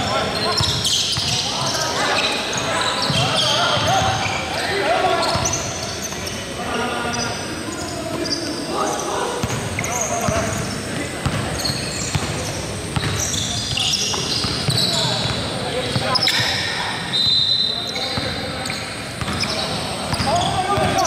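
Basketball game in a reverberant gym: the ball dribbling on the hardwood court, sneakers squeaking in short high chirps, and players calling out indistinctly.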